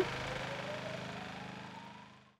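Motor of a truck-mounted disinfectant sprayer running steadily over a hiss, with a faint whine that rises slowly in pitch, the whole sound fading away.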